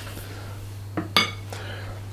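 Small metal ice cream scoop set down in a glass mixing bowl of batter: two quick clinks about a second in, the second ringing briefly. A low steady hum runs underneath.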